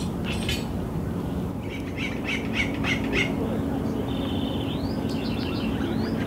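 Birds calling: a quick series of short calls a couple of seconds in, then rapidly repeated chattering phrases in the second half. A steady low hum runs underneath.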